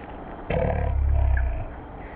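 A deep roar-like sound in an electronic music track, one loud burst starting about half a second in and lasting about a second, one of a series of such bursts.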